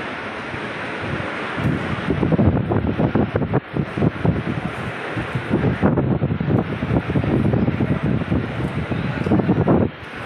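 Loud, uneven rumbling and buffeting on a handheld phone's microphone, in irregular low thumps, with no clear voices.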